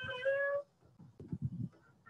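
Casket lowering device squealing with a steady high tone as the casket is let down. The squeal rises a little and breaks off about half a second in, leaving faint low knocks from the mechanism.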